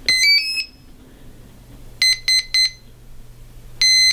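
Electronic speed controller start-up tones played through the brushless motor as the battery is connected: a quick rising three-note chime, then three short beeps about two seconds in, then a longer beep near the end, the signal that the controller has powered up and armed.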